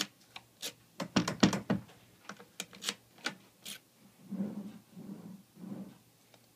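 A key turning in a newly installed Steelcase lock cylinder, giving a series of sharp metal clicks as the drawer latch is worked, which shows the lock functioning as it should. Near the end, a softer, lower sound of the drawer sliding open on its runners.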